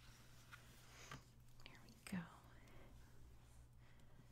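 Near silence: room tone with a few faint, short handling noises as a paperback book is turned over on a table, the loudest about two seconds in.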